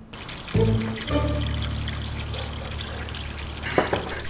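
Water running steadily under low, sustained background music, with a brief knock near the end.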